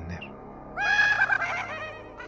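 Short horror sound effect: a high, quavering voice-like cry about a second long, starting just under a second in and fading away, over faint background music.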